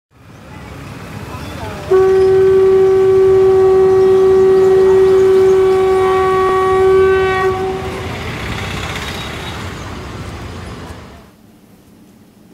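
A single long horn blast, starting suddenly about two seconds in and holding one steady pitch for about six seconds before fading, over the steady noise of a busy street. The street noise cuts off shortly before the end.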